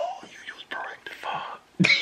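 Low, muffled voices of people talking quietly in a room, partly whispered, with a louder voice cutting in near the end.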